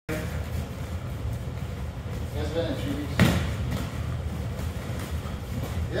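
One sharp smack of a padded boxing glove landing a punch about three seconds in, over a steady low rumble.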